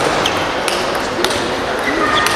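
Table tennis ball clicking off the bats and the table during a rally, a few sharp ticks about half a second apart. Under them is a steady background murmur of voices in a large hall.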